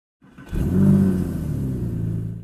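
Intro sound logo: a deep sustained electronic tone with a rushing, hissy swell above it. It comes in sharply about half a second in and starts to fade near the end.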